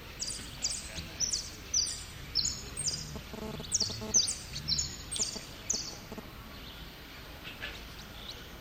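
Jilguero (saffron finch) singing: phrases of rapid, high, sharply falling notes in quick succession. The song stops about six seconds in.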